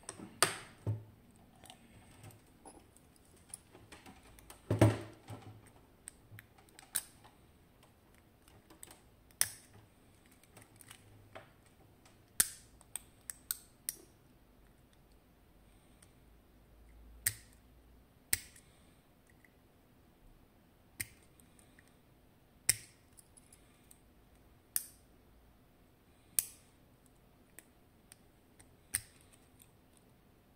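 Irregular sharp metallic clicks and taps of a thin steel tool working at the back of a Miwa DS wafer lock cylinder, handled on a stone bench top. There is a heavier knock about five seconds in.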